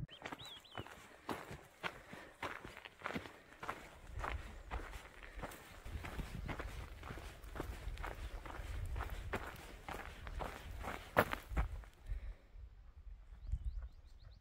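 A hiker's footsteps on a dirt trail, a little under two steps a second, over a low rumble. The steps stop about 12 seconds in.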